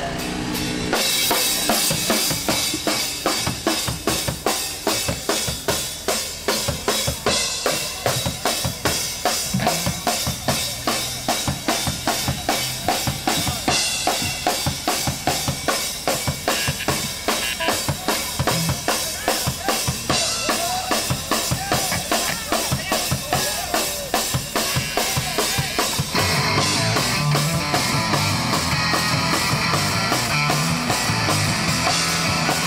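Rock music led by a drum kit playing a steady beat of kick, snare and cymbals. Near the end the sound grows fuller as more of the band comes in.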